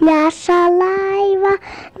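A young child singing into a microphone: a short note, then one long held note on a steady pitch.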